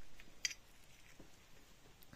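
Gloved hands handling parts: one sharp click about half a second in, then a few faint clicks, over quiet room tone.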